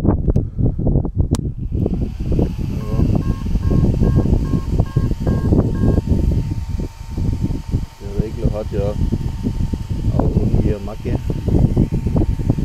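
A brushless RC speed controller plays its start-up beeps, a run of short electronic beeps at two alternating pitches from about two to six seconds in, just after the battery is plugged into the Arrma Kraton 8S. A faint steady tone follows. Everything sits over a loud low rumble and handling noise.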